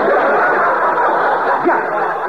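Radio studio audience laughing together, a steady swell of laughter that holds through the whole stretch and eases slightly near the end, heard through a thin, band-limited old broadcast recording.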